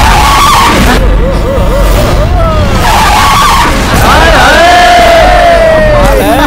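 An open jeep's tyres squealing and skidding as it brakes hard and slides to a stop, in a few long pitched squeals, one of them held steady near the end.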